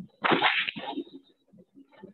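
A sudden loud noisy burst of about half a second through a Zoom call's narrow-band audio, trailing off by about a second in.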